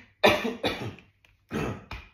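A man coughing: three short coughs, two close together and a third about a second later.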